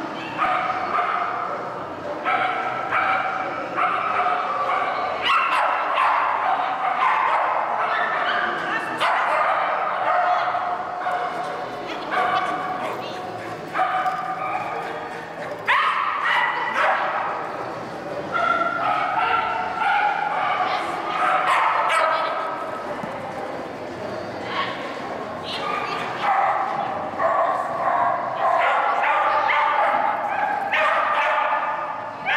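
A dog barking over and over in short barks with brief pauses between them.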